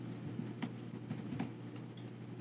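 Computer keyboard typing: a few quiet, separate keystrokes over a steady low hum.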